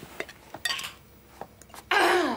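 A few small clinks and clicks of a glass jar being handled, with a short scraping rustle about half a second in. A voice sound, like a falling "mmm", starts right at the end.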